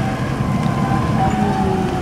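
Forklift engine running as it drives close by: a steady low rumble with a faint whine sliding slowly over it.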